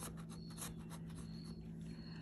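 Metal bottle opener scraping the coating off a scratch-off lottery ticket in a run of short, faint strokes.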